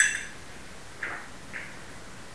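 People sipping absinthe from small glasses: a sharp click with a brief high ring at the start, then soft, short sipping and breathing sounds about a second and a second and a half in.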